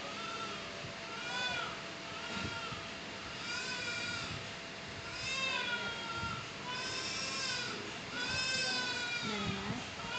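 Newborn baby crying: a string of about seven short wails, each rising and falling in pitch, coming roughly once a second.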